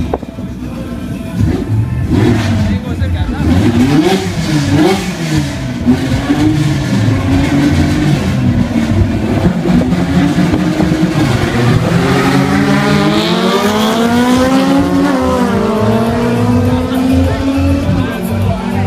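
Drag-racing cars' engines revving hard at the start line, the pitch rising and falling again and again in quick blips, then climbing in longer sweeps through the second half.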